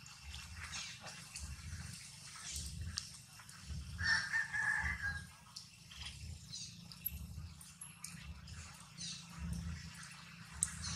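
Outdoor ambience with scattered short, high bird chirps, and about four seconds in one louder animal call lasting about a second.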